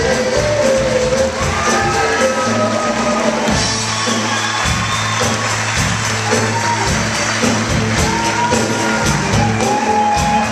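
Live band of drum kit, electric guitars and keyboard playing an up-tempo rock and roll number with a steady beat, with singing over it and some cheering from the audience.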